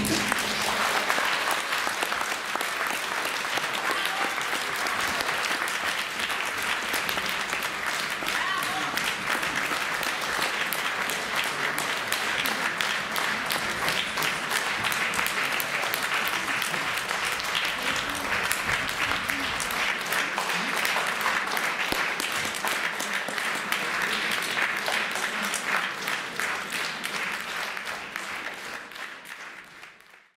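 Theatre audience applauding steadily, fading out over the last few seconds.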